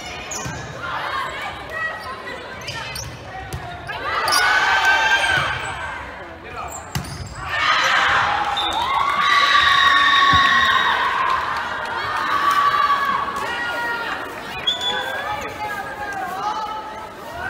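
Many voices of spectators and players shouting and cheering in a large gym hall, swelling loudly about four seconds in and again from about eight seconds on, with a few sharp knocks of the ball.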